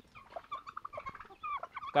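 Free-range poultry calling: a scatter of short, quiet chirping calls from turkeys and chickens, some rising and some falling in pitch.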